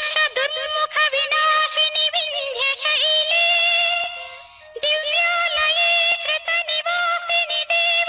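Devotional song: a voice singing long held, ornamented notes over instrumental accompaniment, with a short break about four and a half seconds in.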